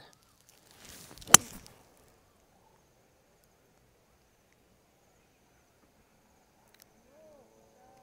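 Swish of a five wood's downswing and the sharp crack of the clubhead striking a golf ball off the tee, about a second in, from a deliberately slowed, easy swing.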